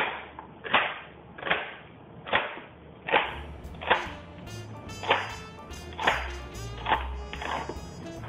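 Knife chopping a celery stalk into small pieces on a cutting board, about ten even cuts a little over one a second. Background music comes in about three seconds in.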